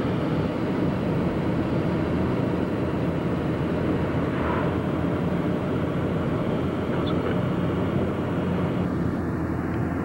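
Steady rushing noise of a car driving at road speed, engine, tyre and wind noise heard from inside the car, with a low hum underneath.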